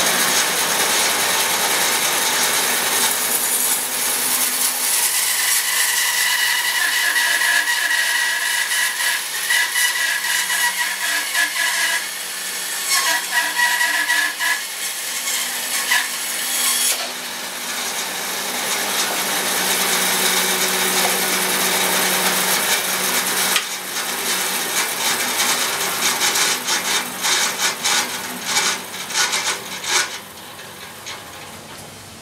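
Bandsaw cutting through a fresh ash log, slicing a slab off its back, with the dust extractor running. The cut goes on steadily, with a high whine in the middle stretch, and the noise drops away at the end as the slab comes free.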